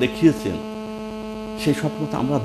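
Steady electrical mains hum in the recording, a low tone with a ladder of higher tones above it. Brief bits of a voice break in at the start and near the end.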